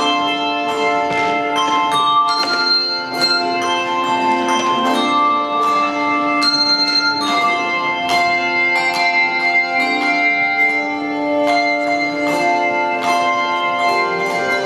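Handbell choir playing: struck bells ringing in chords that hold and overlap, with fresh strikes coming every half second or so.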